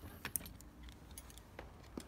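A few faint, sharp clicks and light taps, the clearest one just before the end, over a low rumble.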